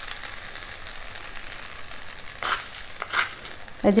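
Vegetable masala with ground coconut paste sizzling in a nonstick frying pan, a steady soft hiss, with two short crisp sounds past the middle.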